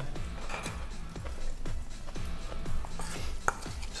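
Light clicks and taps of kitchen utensils and dishes on a wooden cutting board while fish is set onto a corn tortilla, with one sharper knock near the end, over soft background music.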